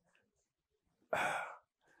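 A man's single short breath, a sigh-like puff of air into a close microphone, about a second in.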